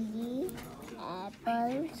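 Speech only: voices reading single words aloud, held and drawn out, as a child repeats words after a woman.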